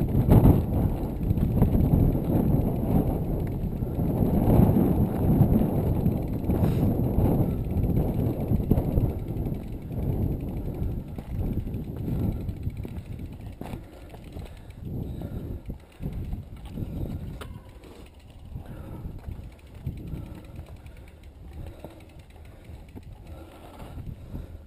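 Wind buffeting an action camera's microphone, louder in the first half, over the scattered clicks and rattles of a mountain bike being pushed up a rocky trail.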